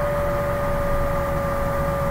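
Steady background hum and hiss of the recording, with a constant high-pitched whine and a low rumble underneath, unchanging throughout.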